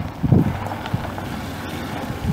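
Wind gusting on the microphone in irregular low bursts, loudest about a third of a second in, over a faint steady low rumble.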